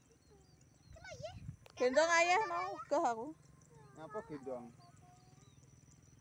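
A person's voice in a few short phrases, which the recogniser did not write down.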